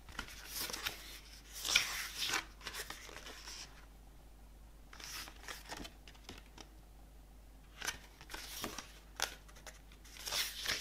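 Pages of an album photobook being turned and handled by hand: crisp paper rustling and swishes in three spells with short pauses between.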